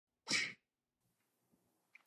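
A person's single short, breathy vocal burst, about a third of a second long.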